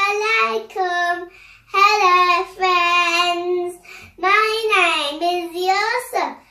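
A young boy singing long, held notes with a wavering pitch, in three phrases broken by short breaths.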